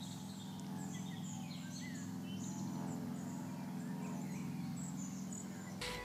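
Faint outdoor ambience: birds chirping in short, high calls over a steady low hum.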